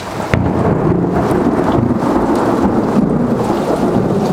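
Thunder: a sharp crack about a third of a second in that rolls into a long, low rumble, over the steady hiss of rain.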